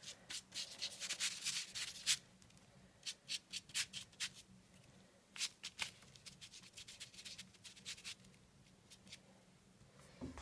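Cotton swab rubbed and dabbed across paper, spreading paint in short quick strokes that come in bunches with pauses between, thinning out over the second half.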